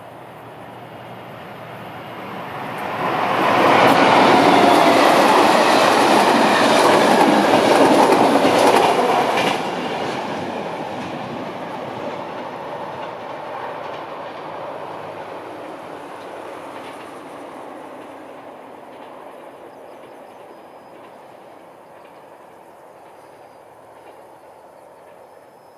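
Express train hauled by a ZSSK class 757 diesel-electric locomotive passing close at speed: loud for about six seconds, with wheels clattering over the rail joints. The sound drops off sharply and fades away as the coaches recede.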